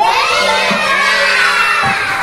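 A classroom of young children shouting and cheering together, many high voices at once, loud.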